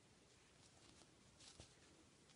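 Near silence: room tone with faint rustling of yarn and a steel crochet hook being worked by hand, slightly louder about a second and a half in.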